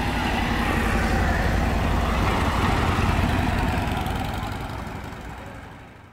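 Motorcycle engines running at low speed as police motorcycles ride past, a steady low rumble that fades out over the last couple of seconds.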